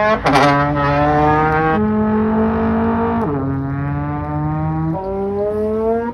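Trombone playing four long, low held notes, each lasting a second or two, with the slide shifting the pitch between them and some notes bending upward.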